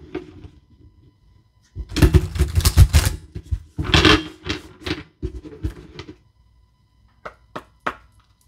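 A deck of oracle cards being shuffled by hand: bursts of rapid card clatter about two seconds in and again around four seconds, then three short sharp taps near the end.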